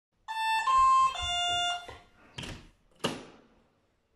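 An electronic doorbell chime plays a short tune of about four notes, followed by two knocks on the door about two-thirds of a second apart.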